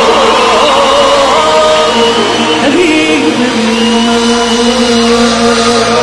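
A live band playing Persian pop music, with long held notes and a wavering melodic line in the first second or so.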